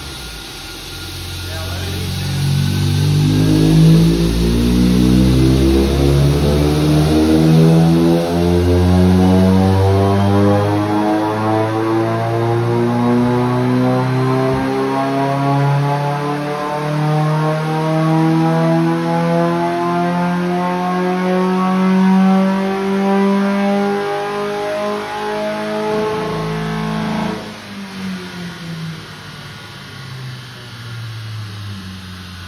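Ford Focus four-cylinder engine at full throttle on a chassis dyno, revving steadily up through its range for about 25 seconds, with a fainter rising whine alongside. It backs off sharply near the end.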